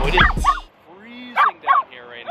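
Backing music cuts off suddenly about half a second in; then a puppy gives a short whine and two quick high yips near the end.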